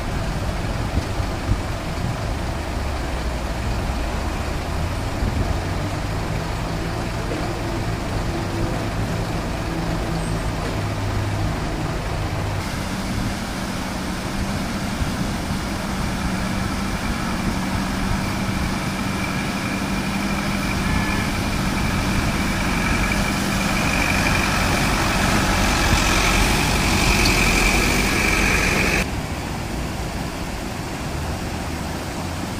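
Heavy diesel vehicles running by a rushing flooded river: a tipper truck's engine idling, then, after a cut, a bus engine under load as it drives through the floodwater. The sound grows louder over the last several seconds, with a high steady tone rising above it, and cuts off suddenly near the end.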